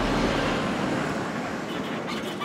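Steady road traffic noise from a queue of cars and vans, starting abruptly and dying away only slightly.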